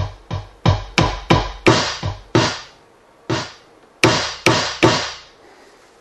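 E-mu Drumulator drum machine playing about a dozen single drum hits, triggered by hand from a MIDI keyboard at irregular spacing, some with a deep thump and a falling pitch like toms. The hits vary in strength, showing the drum machine's velocity response over MIDI. They stop about five seconds in.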